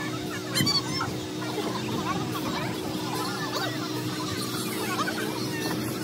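Outdoor hubbub of many children's voices chattering and calling, with a brief higher shout about half a second in, over a steady hum.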